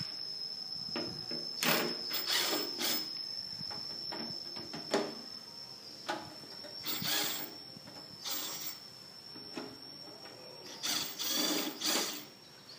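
Irregular short scrapes and clicks of a screwdriver working the screws on an old amplifier's sheet-metal case, with the metal chassis shifted about on a tile floor.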